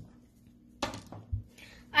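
A die thrown onto a paper game board on a table, landing with a few quick knocks about a second in. A child's voice starts to speak at the very end.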